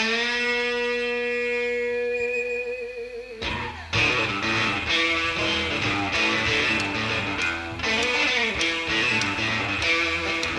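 Live blues-rock band playing an instrumental opening: an electric guitar holds one sustained note for about three seconds, bends down and drops out, then the guitar, bass and drum kit come in together in a driving rhythm about four seconds in.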